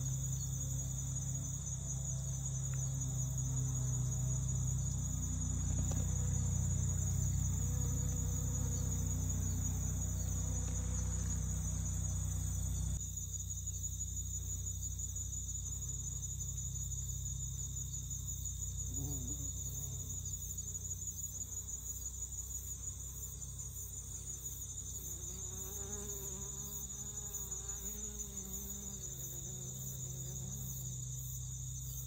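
Steady high trilling of crickets, with honey bees buzzing as they work goldenrod flowers; a bee buzzes close by with a wavering pitch late on. A low hum underneath cuts off abruptly about 13 seconds in.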